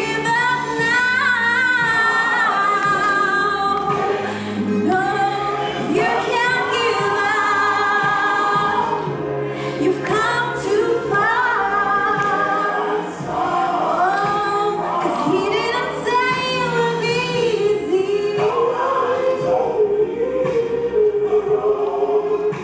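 A woman singing a gospel song solo into a handheld microphone, her melody bending and holding long notes over steady, held low accompaniment notes.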